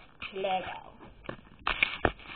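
A girl says a short phrase, then a click and a loud scuffle of camera handling, ending in a knock.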